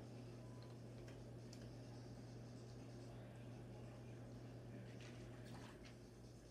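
Very quiet: a steady low hum, with a few faint ticks and soft handling noises from hands pressing wet clay together to join a head and neck to a bowl.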